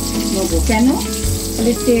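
Whole pointed gourds sizzling as they fry in oil in a wok. Background music with a gliding melody and steady bass notes plays over the sizzle.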